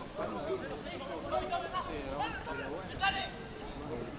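Several voices calling and shouting over one another during rugby play in progress, with one louder call about three seconds in.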